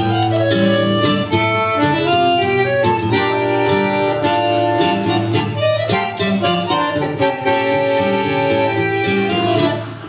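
Bandoneon and nylon-string guitar playing a tango together: the bandoneon's reedy held chords and melody over the guitar's plucked accompaniment.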